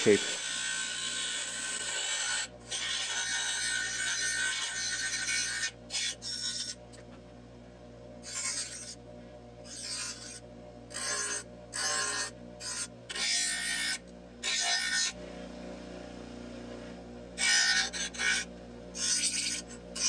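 6-inch bench grinder running with a steady motor hum while a strip of annealed carbon-steel saw blade is pressed to the wheel in repeated passes, each contact a hiss of grinding. Two long passes come first, then many short touches, with a pause of about two seconds near the end before a few more.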